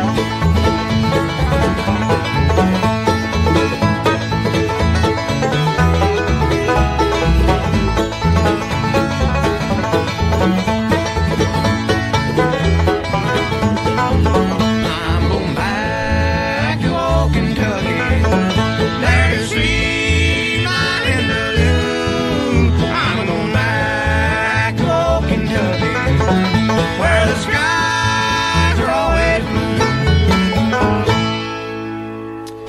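Live acoustic bluegrass band playing, with banjo to the fore over guitar, mandolin and bass. The first half is instrumental, and singing in harmony comes in at about the halfway point.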